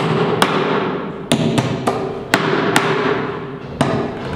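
Steel hammer driving nails into a timber-and-plywood shuttering box: about eight sharp strikes at an uneven pace, several in quick pairs.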